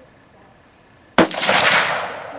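A single shot from a Stag Arms AR-style rifle chambered in 6.8 SPC, about a second in: a sharp crack followed by about a second of echo.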